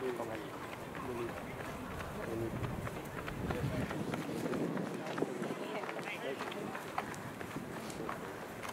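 Several spectators' voices calling out and cheering on runners during a track race, with scattered short clicks.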